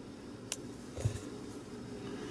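A single sharp click about half a second in as the power button on a Comica WM100 Plus wireless-mic transmitter is pressed, then a duller low thump of hand handling, over a faint steady hum.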